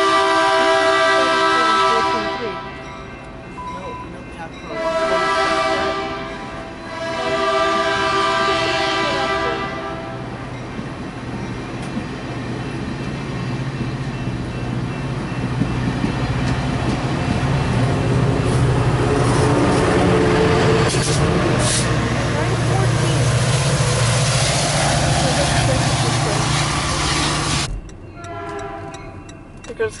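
Caltrain commuter train's horn sounding three blasts: a long one at the start, then two of about two seconds each, about five and seven seconds in. The train then rumbles steadily past as it pulls out, wheels on rail and locomotive engine growing louder toward the end before the sound cuts off abruptly.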